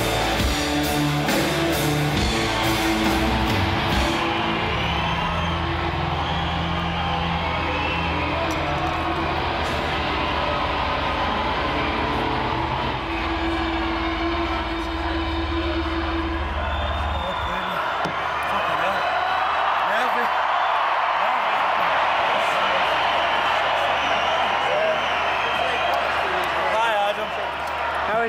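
Live rock band playing electric guitars and drums; about four seconds in the drums stop and a held chord rings on. About seventeen seconds in the chord ends and a large crowd cheers.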